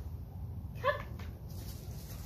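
A golden retriever puppy gives one short whine just under a second in, over a steady low rumble.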